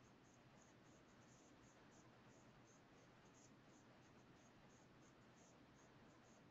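Near silence: a faint steady hiss with faint, irregular high ticks several times a second.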